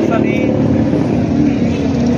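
Steady low rumble of road traffic outdoors, with a short spoken word at the start.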